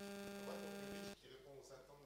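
Steady electrical mains hum that cuts off suddenly a little past halfway, leaving a faint, distant voice.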